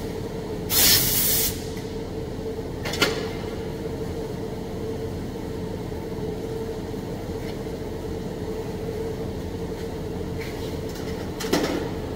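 Steady machine hum with one fixed tone, typical of a welding booth's ventilation. About a second in comes a short, loud hiss of air, likely a brief blast from the pneumatic tool on the shop air line. A sharp click follows at about three seconds, and another short hiss comes near the end.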